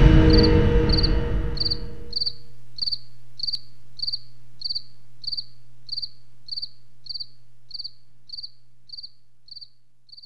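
A cricket chirping steadily in evenly spaced high chirps, about three every two seconds, fading slowly. A loud, deep swell of music dies away over the first two seconds.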